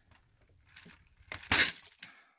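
The wound spring of a 75-round AK drum magazine letting go as its release is pressed down: a few faint clicks, then one brief sharp clatter about a second and a half in as the spring tension is relieved.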